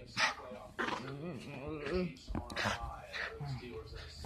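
Small dog vocalising while it play-fights with a person's hands: a sharp yap just after the start and another a little after two seconds, with wavering whines and growly sounds between them.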